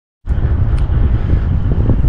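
Wind buffeting the microphone: a loud, uneven low rumble that starts about a quarter second in, with a couple of faint clicks.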